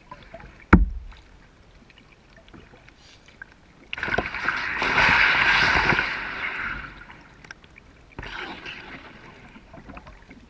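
Kayak paddling on a calm river: a single sharp knock about a second in, then a paddle stroke with water splashing and running off the blade from about four to seven seconds, and a softer stroke near the end.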